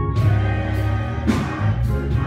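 Gospel choir singing with a live church band, a steady bass line and drum and cymbal hits about once a second.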